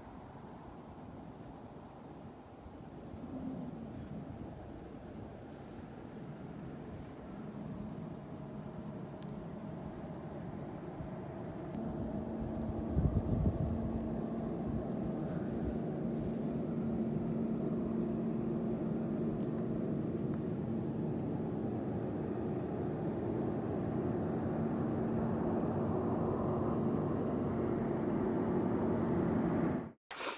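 Quiet outdoor ambience with a cricket chirping steadily, about three chirps a second, over a low steady hum that grows louder from about twelve seconds in.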